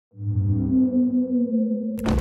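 Humpback whale call: a low, sustained moan sliding slowly down in pitch over a low hum, cut off abruptly at the end.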